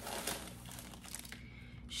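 Faint crinkling of a clear plastic bag around a wax melt tub as it is picked up and handled, busiest in the first second.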